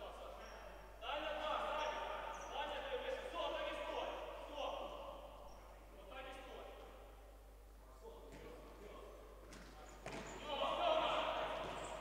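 Futsal players' voices calling out across a large, echoing sports hall, with a couple of sharp ball kicks near the end.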